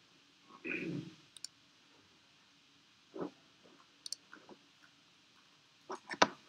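Sparse clicks and taps from a laptop's keyboard and trackpad, among them a louder knock about three seconds in. A brief low muffled sound comes about a second in.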